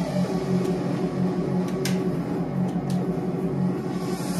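A DJ mix playing over speakers in a small room, carried by a steady pulsing bass beat, with a couple of sharp ticks about two and three seconds in.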